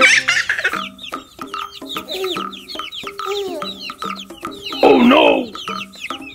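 Chicks peeping, a fast run of short falling cheeps, over light background music. About five seconds in there is a louder, longer bird call.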